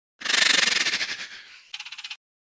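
Intro sound effect for an animated logo: a loud rush of rapidly fluttering noise that starts just after the beginning and fades away over about a second, followed near the end by a short, thinner buzzing sound.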